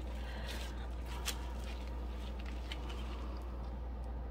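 Steady low hum of room background, with a few faint scattered ticks and a small tap about a second in.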